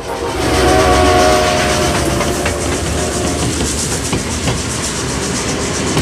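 A train sounds its horn for about a second and a half, then runs on with a steady rattle and clatter of wheels on the rails.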